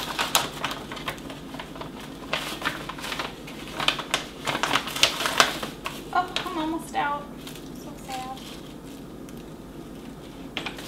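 Coconut sugar bag crinkling and rustling as sugar is scooped out with a measuring cup: a run of short rustles and clicks that thins out over the last couple of seconds.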